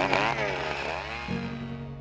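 Eskimo F1 Rocket 33cc two-stroke gas ice auger engine running and revving, its pitch rising and falling, fading away over the first second and a half. Soft background music with a held chord comes in about halfway through.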